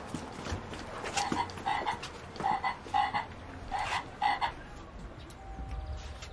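A frog croaking in two-note calls, three pairs about a second apart, each note short and clearly pitched.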